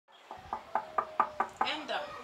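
A run of seven quick knocks, about four or five a second, each with a short hollow ring, followed by a brief voice sound near the end.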